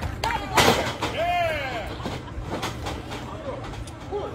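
One loud, sharp impact from the wrestling ring about half a second in, as a strike or body lands, followed by spectators shouting.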